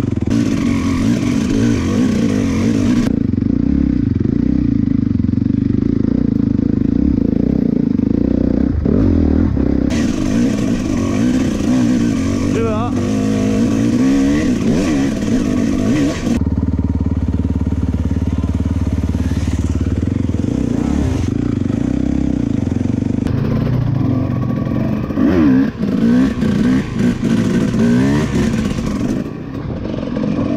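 Dirt bike engines revving up and easing off as the bikes ride a forest trail, the pitch rising and falling with the throttle. The sound changes abruptly several times as one riding clip cuts to the next.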